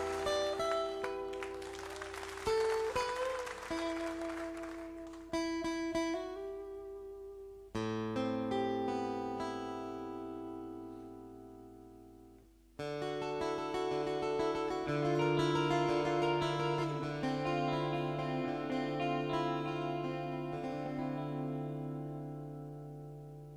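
Solo steel-string acoustic guitar played unaccompanied, a picked instrumental passage in which chords are struck about four times and left to ring and fade between strikes.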